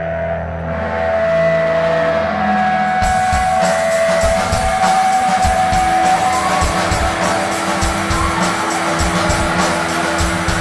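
Live rock band with electric guitars, bass and drums: long sustained guitar notes ring out, then about three seconds in the drums and full band come in and play loud to the end.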